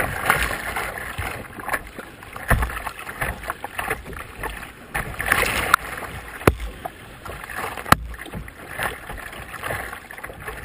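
Choppy river water splashing and slapping against a kayak's hull in uneven surges, picked up by a camera on the deck. A few sharp knocks cut through, the loudest about eight seconds in.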